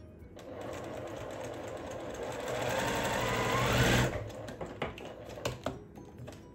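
Domestic sewing machine stitching a seam, running faster and louder until it stops abruptly about four seconds in. A few sharp snips follow as scissors cut the thread.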